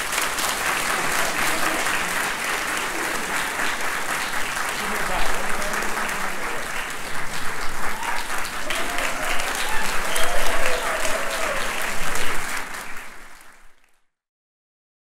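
Audience applauding steadily, with a few voices calling out in the middle; the applause fades out near the end.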